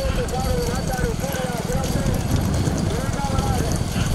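Bullock-cart race: racing bullocks' hooves clattering on the tarmac as men shout repeated calls to urge them on, over the low steady running of motorcycles following the carts.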